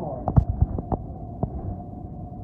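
Inside a moving city bus: steady engine and road rumble with a faint whine. About half a second in, a short run of sharp knocks and rattles, and one more knock near the middle.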